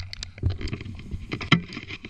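An ATV engine running low just after a crash, with scattered short knocks, scrapes and rustles as the rider and machine settle in the brush.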